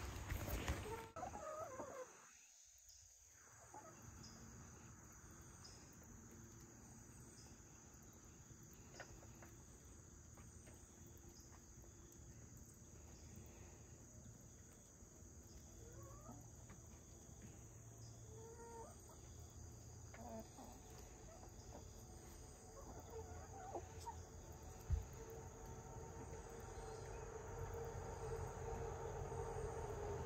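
Hens clucking and calling softly as they forage, with short scattered calls and a steadier held call near the end. A single sharp click sounds about 25 seconds in.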